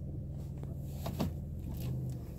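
Van engine idling, a steady low hum heard inside the cabin, with a few faint clicks over it.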